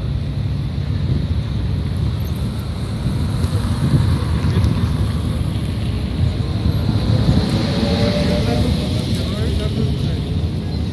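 Street traffic passing close by, over a steady low rumble of wind on the microphone; one vehicle's engine grows louder about seven seconds in.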